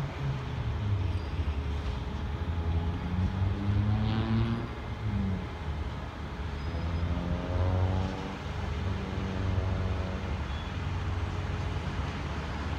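Motor vehicle traffic: a steady low engine rumble, with the tones of vehicles rising and falling as they pass, twice in a row.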